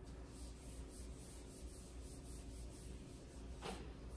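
Marker writing being wiped off a whiteboard: faint, quick rubbing strokes, about four or five a second, with one stronger swipe near the end.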